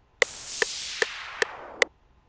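FL Studio's metronome ticking steadily, about two and a half ticks a second. Under it a hissing white-noise sound from the track plays from about a quarter second in and cuts off suddenly near the end.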